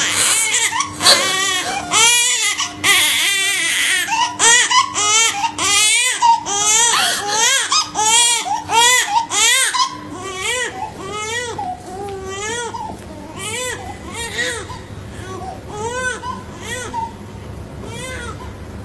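A newborn baby crying in short, repeated rising-and-falling wails, the first cries after a birth. The crying is loud at first and turns softer and more broken about halfway through.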